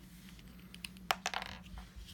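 A few light clicks and taps of small hard objects, the sharpest about a second in, followed by several weaker ticks, over a low steady hum.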